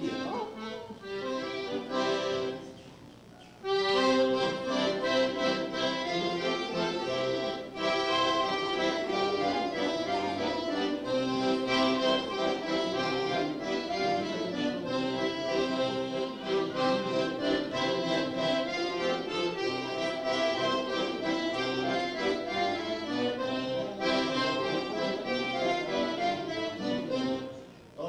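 Accordion playing a melody over chords. It breaks off briefly about two and a half seconds in, then plays on steadily until near the end.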